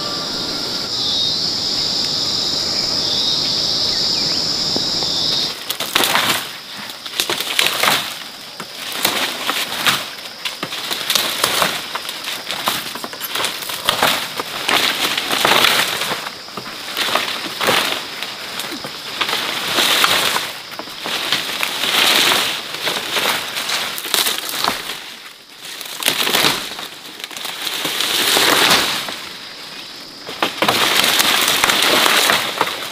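A steady, high insect buzz for the first five seconds or so. Then comes repeated rustling and crackling of dry tiger grass (chit) stalks and leaves as they are pushed through and harvested by hand, in bursts every second or two, with the insect buzz still faintly underneath.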